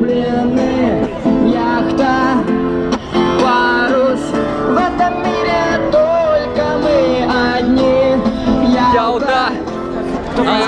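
A street busker singing a Russian pop song into a microphone while strumming an acoustic guitar, played through a small portable amplifier.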